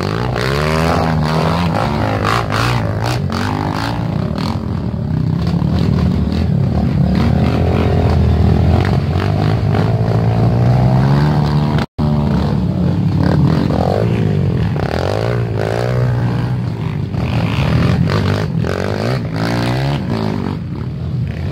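Several dirt bike engines revving unevenly under load as the bikes climb a steep, muddy slope, their pitch rising and falling with the throttle. The sound cuts out for an instant about twelve seconds in.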